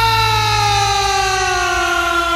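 A long, siren-like note sliding slowly and steadily down in pitch as part of a rock song played on the radio, over a low steady drone that drops out about a second in.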